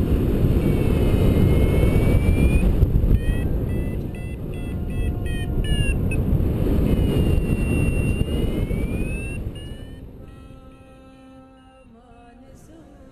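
Wind rushing over the camera microphone of a paraglider in flight, with a flight variometer's electronic tones over it: a tone rising in pitch, a run of short beeps, then another rising tone, the variometer's sign of lift. Near the end the wind dies down and quiet music comes in.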